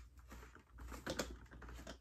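A few faint clicks and scrapes of fingers prying open a small perforated cardboard door on a chocolate advent calendar.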